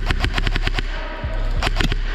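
Airsoft rifle firing on full auto: a rapid burst of about eight shots, then a shorter burst of three or four shots near the end.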